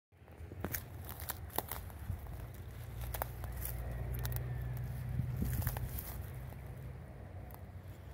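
Freight train of tank cars rolling past: a steady low rumble that swells about halfway through and then eases, with scattered sharp clicks and clanks.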